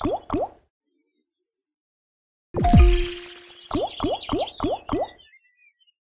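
Online slot game sound effects during a free spin: the last short rising bloops of one spin, a silent gap, then a loud hit with a falling tone as the next spin starts, followed by five short rising watery bloops about a third of a second apart as the reels land.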